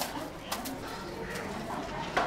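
Low bird cooing, with a few light taps about half a second in.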